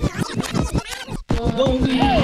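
DJ turntable scratching in a dance track: fast back-and-forth swishing strokes over the beat, which cut out briefly just after a second in before a vocal line comes in over the music.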